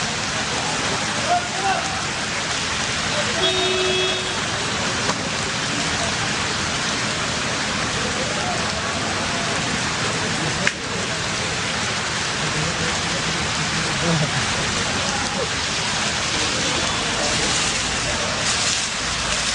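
Heavy rain pouring onto a wet asphalt road: a steady, dense hiss of drops hitting the surface. A single sharp click comes about ten and a half seconds in.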